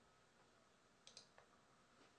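Near silence with a few faint, short clicks about a second in, from a computer mouse.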